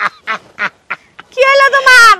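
A man's exaggerated, theatrical laughter in short bursts, about four a second, breaking about one and a half seconds in into one long, loud cry.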